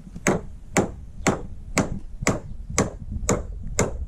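A steady series of sharp taps or knocks, about two a second, evenly spaced and ringing briefly.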